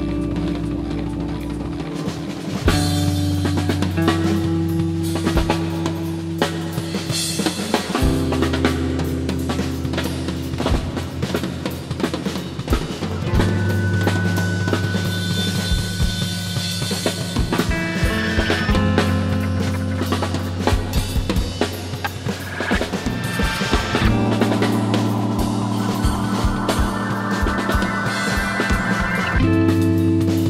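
Instrumental post-rock: a drum kit played with sticks, busy snare and tom strokes, over low sustained notes that shift pitch every few seconds. About two-thirds of the way in, further instruments fill out the middle of the sound.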